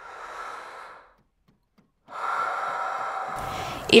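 A woman's audible breaths: a short, faint one, then about two seconds in a longer, louder one just before she speaks.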